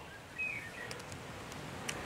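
Quiet outdoor background with a short, faint bird chirp about half a second in, and a single light click near the end.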